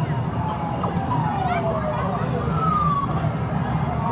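Electronic arcade game sound effects: several siren-like sliding tones, mostly falling in pitch, over the steady din of an arcade.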